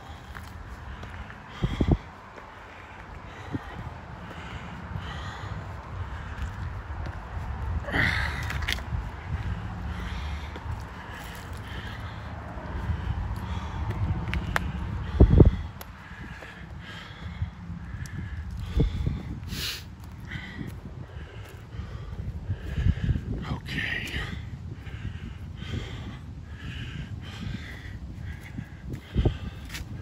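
A man breathing hard as he walks up a steep grassy hill, with footsteps and a low rumble on the handheld microphone. There is a sharp knock about two seconds in and a louder one about fifteen seconds in.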